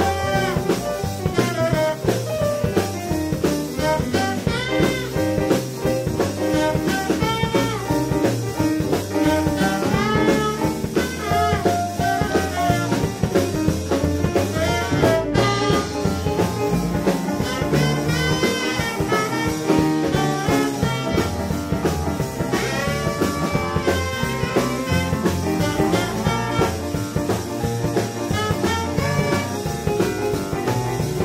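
Live swing jazz band playing an instrumental passage: tenor saxophone and a brass horn carry the melody over drum kit, upright bass and keyboard, with a steady swing beat.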